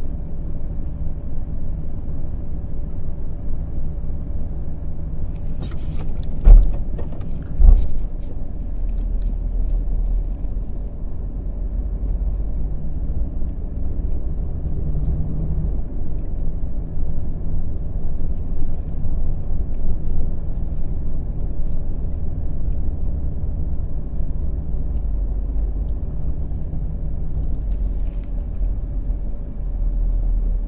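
Low, steady engine and road rumble heard from inside a vehicle's cabin while it inches along in stop-and-go traffic. Two sharp loud thumps come about a second apart, roughly six and a half seconds in, and the deep rumble then grows stronger as the vehicle moves forward.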